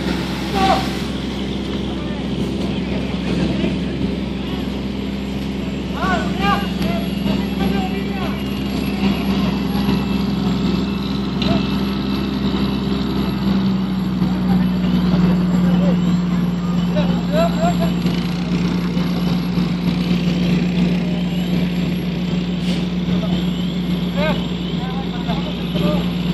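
Fire truck engine running steadily at a constant pitch, powering the pump that feeds the hose lines, with voices calling out now and then.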